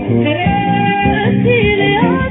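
Ethiopian song transferred from a cassette: a sung melody over plucked-string accompaniment and a steady beat. The sound is dull, cut off above the upper mids, with no treble.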